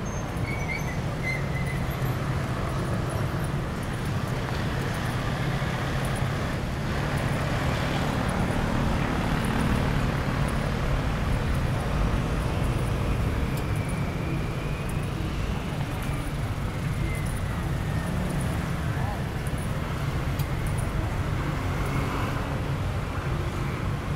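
City street traffic: a steady rumble of cars and motor scooters on the road, with voices of passersby mixed in.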